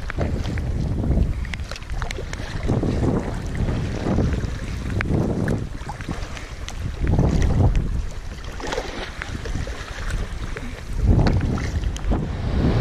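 Strong wind buffeting the microphone, swelling and easing every second or two, over water slapping and splashing around a plastic kayak as it is paddled through chop.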